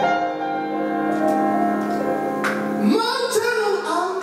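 Live improvisation for a singing voice and grand piano. A held chord rings steadily, then about three seconds in a high voice slides upward into wavering, sustained singing over the piano.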